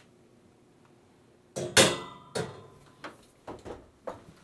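Wall-oven door swung shut on a wire rack holding a glass baking dish: a loud metallic clunk with a short ringing about two seconds in, followed by a few lighter knocks and rattles.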